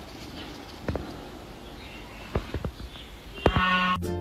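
Outdoor background noise with a few soft knocks, about a second in and again around two and a half seconds. Music with held tones starts near the end.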